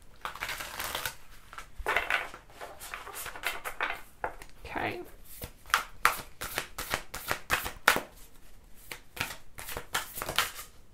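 A tarot deck being handled and shuffled by hand: soft sliding rustles of the cards, then a run of quick, sharp card clicks through the second half.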